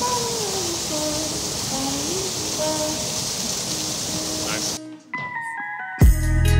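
Rushing water from a siphon pipe's full-bore outflow and the waterfall beside it, with a gliding melodic line over it. About five seconds in, the water sound cuts off and music begins with a falling run of plucked notes.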